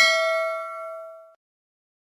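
A single bell ding sound effect for the notification-bell click in a subscribe animation, its ringing tone fading away within about a second and a half.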